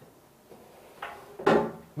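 A single sharp knock about one and a half seconds in, as something is handled at a desk, with a fainter rustle just before it.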